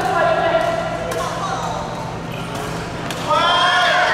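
Several voices talking in an echoing sports hall, with a couple of sharp clicks of badminton rackets striking the shuttlecock about two seconds apart. A louder voice calls out near the end.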